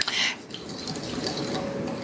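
A utensil stirring a liquid soy-sauce marinade in a small glass bowl, giving a steady sloshing of liquid.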